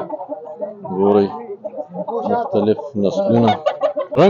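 An Aseel rooster clucking in short repeated calls, with men's voices mixed in.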